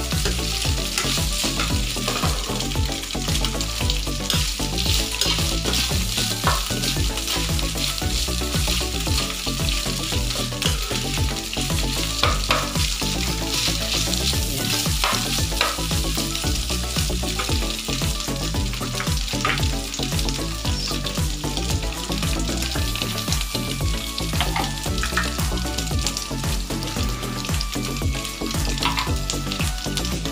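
Ground pork and onion sizzling in hot oil in a pan, a steady frying hiss, with the scrape and tap of a spatula as it is stirred.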